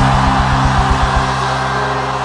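Church band playing under a congregation's shout: a keyboard holds a sustained chord while the drums play a quick run of hits in the first second or so, with the crowd's shouting as a loud haze over it.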